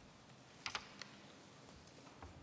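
Near silence: faint room tone, broken by a quick cluster of small clicks about two-thirds of a second in and one more click at one second.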